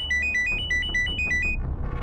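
Mobile phone ringtone: a quick electronic melody of short high beeps hopping between two or three notes, about eight a second, stopping a little over halfway through. Low background music runs underneath.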